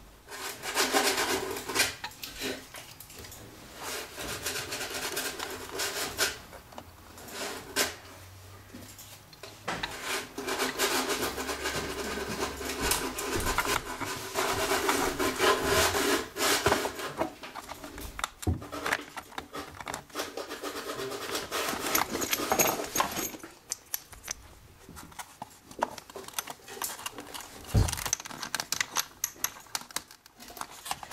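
Wood rubbing and scraping by hand as a violin's ribs and upper block are worked for gluing, in two long stretches with a short pause between, then scattered small knocks and one sharp thump near the end.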